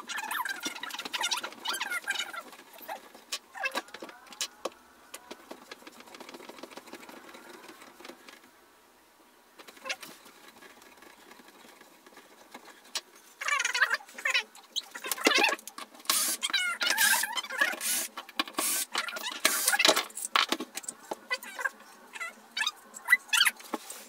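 Furniture-assembly handling noise played back sped up: scattered knocks and clicks with high squeaks as a wooden desk leg is twisted into its threaded white mount and moved about. There is a quieter stretch near the middle, and it is busiest in the second half.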